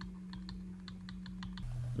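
Stylus tapping and scratching on a graphics tablet while letters are handwritten: a string of light, irregular clicks over a steady low electrical hum.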